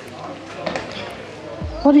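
Background voices with a dull low thud about one and a half seconds in; right at the end a person calls out loudly, the voice falling in pitch.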